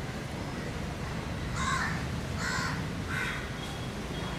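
A bird calling three times in quick succession, starting about a second and a half in, each short call rising and falling in pitch, over a steady low background noise.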